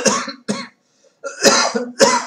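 A man coughs once, a loud, sudden cough about a second and a half in.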